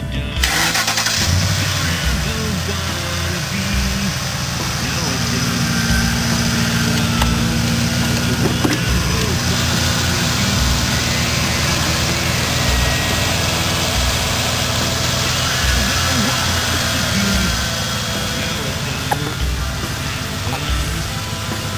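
Ford F-150 Harley-Davidson Edition pickup's 5.4-litre V8 idling steadily, heard at the front of the truck with the hood open.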